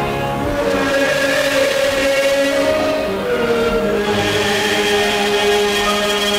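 Two voices, a man's and a woman's, singing a hymn together at microphones, in long held notes.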